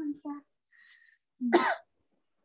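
A person coughs once, briefly, about a second and a half in, after the tail end of a spoken word.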